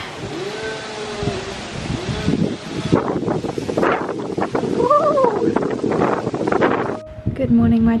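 Chainsaw revving up and down in pitch as a tree surgeon cuts back a tall tree, over a rough noisy hiss. It cuts off abruptly about seven seconds in.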